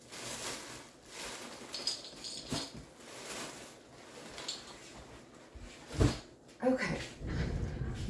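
Rustling and crinkling of a plastic bag and lace trim being rummaged through, in uneven bursts, with a brief high squeak about two seconds in and a single knock about six seconds in.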